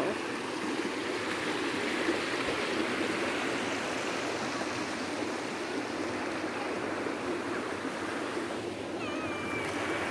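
Shallow stream rushing over stones, a steady rush of running water.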